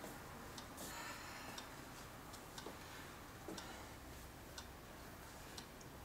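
A clock ticking faintly and steadily in a quiet room, about one tick a second.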